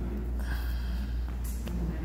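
A man breathing heavily and murmuring faintly close into a handheld microphone, heard through a PA system, over a steady low hum.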